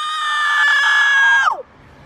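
A girl howling like a wolf: one long, high howl held almost level, sliding down and stopping about a second and a half in.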